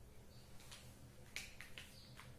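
Near silence: low room hum with a few faint, short clicks, the sharpest a little past the middle.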